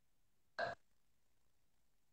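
Near silence, broken about half a second in by one short vocal sound from a person, a brief throaty noise.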